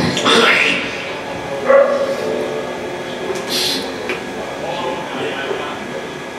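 Indistinct voices talking, with a short hiss about three and a half seconds in.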